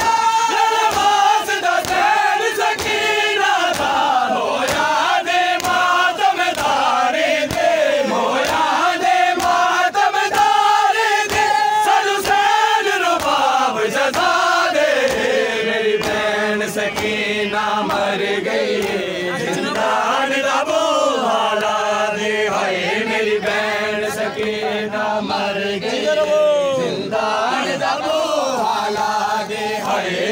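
Male voices chanting a noha (Shia lament) with a crowd of mourners beating their chests in matam, a rhythmic beat of open-hand slaps in time with the chant.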